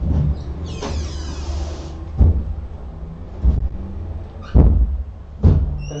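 A rustling noise about a second in, then four dull thumps spaced about a second apart, over a steady low hum.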